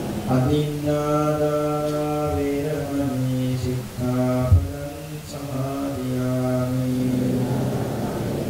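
Buddhist devotional chanting, most likely in Pali: a voice intones long held notes with short breaks between phrases. A brief thump falls about halfway through.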